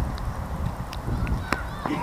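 Low wind rumble buffeting the camera microphone, with a few light clicks. Near the end it gives way to loud shouted calls.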